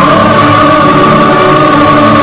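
Live classical-style music fusing Western opera with Middle Eastern music: two female opera singers hold one long high note together over a small ensemble of oud, flute, accordion, violin and cello.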